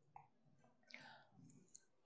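Near silence: faint room tone with a few very soft clicks.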